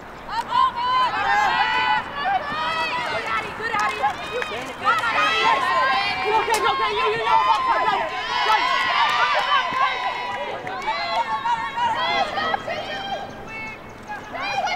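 Several women's voices shouting and calling out over one another throughout, high-pitched and without clear words: players calling to each other on the field during women's lacrosse play.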